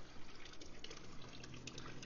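Water trickling and dripping into an outdoor pond water feature: a steady faint wash of running water with small drips through it, over a faint low hum.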